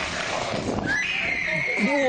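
A young woman's high-pitched scream as she is thrown off a snowy rooftop on a bungee rope, starting about a second in after a rush of noise, held high and slightly falling.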